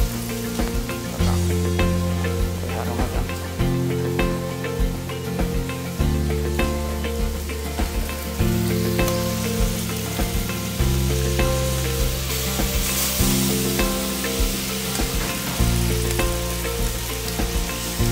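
Seafood-and-chicken paella sizzling and crackling in a paella pan over a gas burner. Background music with low chords changing about every second or two plays over it, and the music is the louder of the two.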